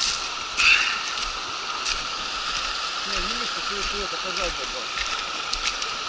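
Small river running steadily over a gravel riffle, heard as an even rushing, with a few crunching footsteps on loose river gravel, the sharpest about half a second in.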